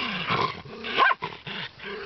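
A group of dogs play-fighting at close range, with low growls and scuffling and one short, high yelp about halfway through.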